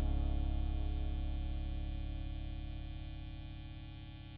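Music: a held guitar chord with a steady waver in it, slowly dying away across the few seconds.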